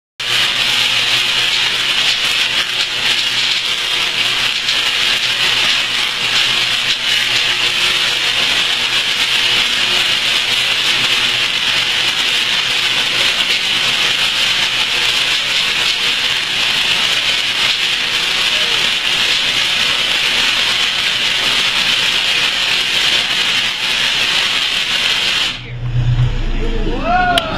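Tesla coil firing spark discharges into the air: a steady, loud buzz that cuts off suddenly near the end as the coil is switched off.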